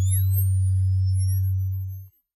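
Synthesized logo-intro sound effect: a loud, steady deep drone with thin, high whistling tones slowly rising above it and a few others sliding down in pitch, all cutting off together at the end.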